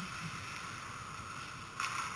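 Indoor ice rink during a hockey game: steady background hiss, with one sharp crack from the play near the end.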